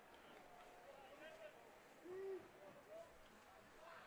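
Near silence at a football field, with faint distant voices from players and sidelines and one brief drawn-out shout about two seconds in.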